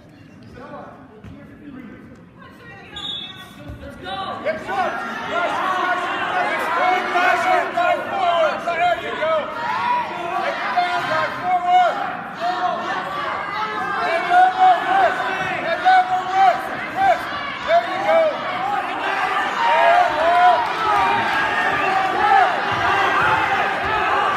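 Spectators in a gym shouting and cheering, many overlapping voices that rise sharply about four seconds in and stay loud.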